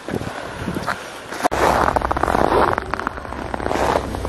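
Footsteps crunching on packed snow, with rustling and a low rumble close to the microphone that start abruptly about one and a half seconds in.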